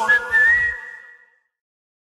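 The closing whistled note of a club/dance song's whistle hook, gliding slightly up and then held, fading out with the track's last notes just over a second in.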